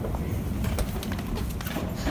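Escalator running: a steady low rumble from its moving steps and drive.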